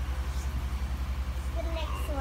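A steady low hum with a fast, even throb, about ten pulses a second, under faint children's voices.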